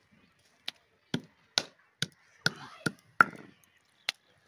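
A stone pestle pounding green Indian jujubes (kul) on a flat stone grinding slab (shil-nora), crushing the fruit. About seven sharp knocks come roughly two a second.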